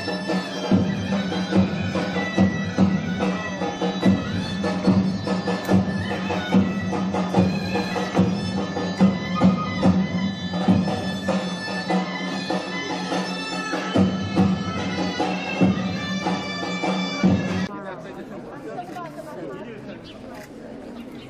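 Zeybek folk-dance music on reed pipes, with one pipe holding a steady drone under the melody and a drum beating strokes through it. It cuts off suddenly about 18 seconds in, leaving crowd chatter.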